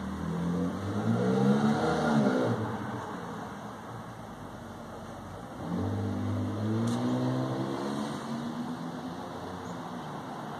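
A motor vehicle's engine accelerating, twice: the pitch rises and falls in the first couple of seconds, then another rising run starts about halfway through and fades near the end.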